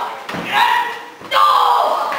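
Voices shouting in a large, echoing hall, two loud calls, the second longer, with a dull thud just before the first.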